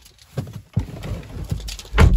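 Handling noise: a few irregular soft knocks and rustles as someone climbs into a car's driver's seat with a handheld camera.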